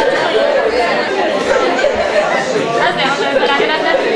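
Many students talking at once: a steady, overlapping chatter of voices with no single speaker standing out.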